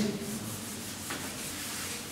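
Whiteboard eraser rubbing across the whiteboard, a steady dry wiping.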